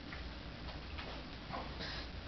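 Faint, irregular light clicks and taps over a low room hum.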